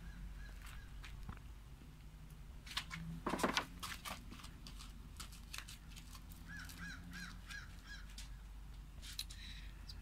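A short burst of crackling pops about three seconds into the clip, from mains electricity shorting through wires in a pan of thermite; it may have tripped the breaker. A few scattered clicks follow.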